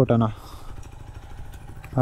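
Motorcycle engine running at low revs with a steady, rapid putter.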